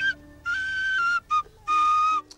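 Pennywhistle (tin whistle) playing a short tune of held notes that step down in pitch, with brief breaks between them.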